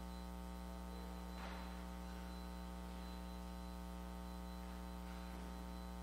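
Steady electrical mains hum with a stack of overtones running through the audio feed. Two faint, brief sounds rise over it, about a second and a half in and again near the end.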